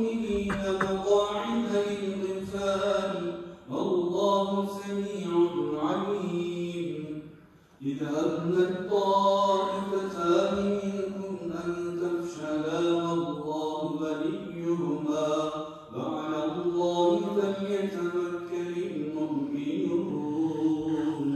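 A man reciting the Quran in Arabic in a melodic chanted style, holding long, ornamented notes in phrases, with pauses for breath about 4, 8 and 16 seconds in.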